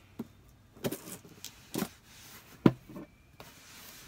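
A cardboard box being opened and its packaging handled: a few scattered knocks and rustles, the loudest about two and a half seconds in.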